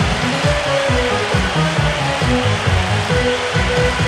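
Instrumental backing track of a Korean stage song playing over the PA in its closing bars: a steady bass-and-drum beat under a simple keyboard melody of short held notes.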